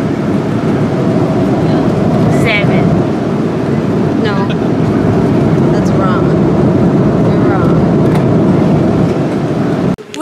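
Steady cabin noise of an airliner in flight, a constant low rush of engines and airflow, with faint voices over it.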